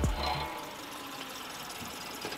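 Background music dying away, then a steady hiss from a car on wet pavement as it pulls up with its headlights toward the camera.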